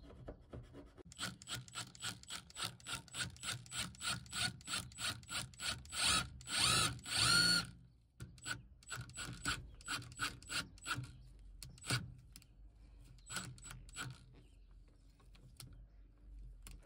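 Paint being scraped off a steel van panel with a pointed hand tool in quick strokes, about four a second. Then a Milwaukee FUEL cordless impact driver runs in two short bursts, driving a self-tapping screw into the metal, followed by a few scattered lighter clicks.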